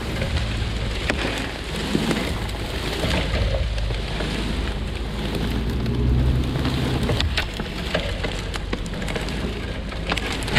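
Two cut tree logs, roped together and pulled by a truck, dragging over dry leaves and brush, heard from on the logs: a steady scraping rustle with frequent twig snaps and crackles over a low rumble.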